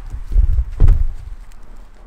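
A few dull, heavy low thumps and knocks, the loudest two about half a second apart just under a second in, over a low rumble of handling.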